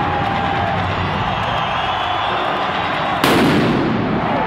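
Arena crowd cheering and whistling in the dark, then a little over three seconds in a single loud explosion with a short rumbling tail: a stage pyrotechnic blast.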